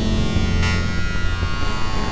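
Experimental electronic music from an EMS Synthi VCS3 synthesizer and computer: a steady buzzing drone with a low hum and many stacked overtones, with a short hiss about two-thirds of a second in.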